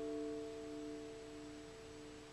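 Acoustic guitar's last strummed chord ringing out and slowly fading, a few low notes sustaining longest.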